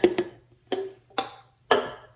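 Hard plastic baby bottles knocking and clicking as they are handled and set down: about five short, sharp knocks spread through the two seconds.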